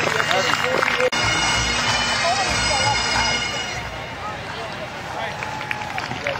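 Bagpipes playing, their steady drone sounding under scattered voices; the piping grows quieter after about four seconds.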